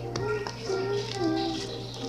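A young girl singing a song in the background, with long held notes that glide up and down, over a steady low hum.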